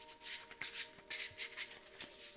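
A deck of tarot cards being shuffled by hand: several quick, soft swishes of card against card.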